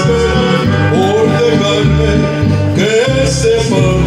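A man singing karaoke into a handheld microphone over a backing track with bass and guitar.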